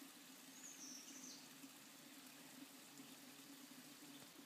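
Near silence: faint background hiss with a low steady hum, and one faint high chirp about half a second in.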